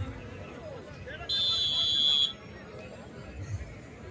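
A single high, steady signal tone, about a second long, sounded during a kabaddi raid over the hubbub of a crowd.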